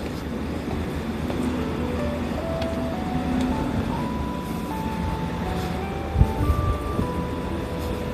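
A simple electronic melody of single pure notes, one at a time, plays over the steady noise of traffic and buses. There is a low thump a little after six seconds.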